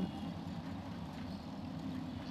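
A steady low hum with no clear changes.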